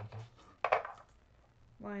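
One sharp hard clack a little over half a second in, as craft gear for the die-cutting machine is set down and handled on the work table, with a short rustle after it. A woman says "line" near the end.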